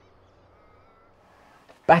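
Near silence for most of the moment, with a faint thin high tone about half a second in, then a man's voice starting near the end.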